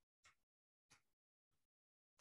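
Near silence, broken by a few faint, brief rustles from hands handling paper and washi tape.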